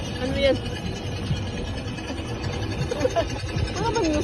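Amusement-park track-ride car running along its guide rail: a steady low rumble with irregular low knocks. A voice speaks briefly at the start and again near the end.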